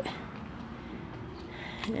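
Faint, steady outdoor background noise in a pause between spoken sentences, with no distinct event.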